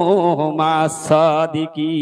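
A man's voice chanting in the drawn-out, melodic sing-song of a preacher's sermon delivery, amplified through a microphone and loudspeaker, in held, wavering notes with short breaks.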